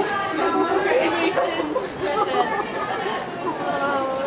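Chatter of several people talking over one another in a street crowd.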